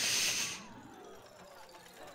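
A short, loud burst of hiss-like noise from the episode's soundtrack, lasting about half a second, then fading to a faint falling tone.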